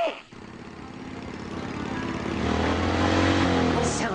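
Cartoon motorcycle engine sound effect approaching, growing steadily louder as the bike nears.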